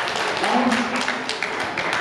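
Audience clapping in a large hall, dense sharp claps mixed with crowd voices, one voice briefly standing out about half a second in.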